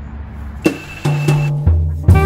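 Background music begins: a few drum-kit hits over held bass notes, leading into a jazzy tune.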